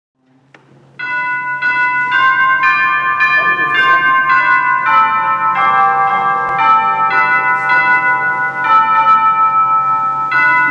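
Bells ringing a sequence of notes, about two strikes a second, each note ringing on into the next, starting about a second in over a steady low hum.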